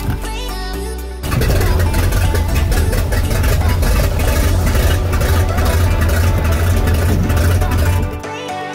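Background music, then about a second in a float plane's engine and propeller come in loud at high power for the takeoff run on the water and run steadily.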